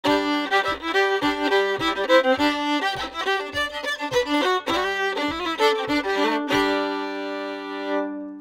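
Fiddle playing a lively old-time fiddle tune, with a low thump on every beat about twice a second. Near the end it settles on a long held chord that rings out.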